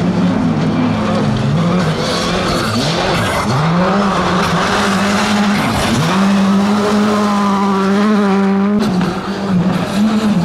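Skoda Fabia R5 rally car's turbocharged four-cylinder engine at high revs, its pitch dropping and climbing again several times through gear changes and lifts. Gravel and tyre noise hiss as it slides through a corner, then the engine is held at steady high revs before a sudden change near the end.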